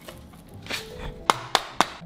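A wooden board being knocked down onto clip fasteners along a tiled step edge. It makes a run of sharp knocks about four a second, starting a little past halfway, as the board snaps into place.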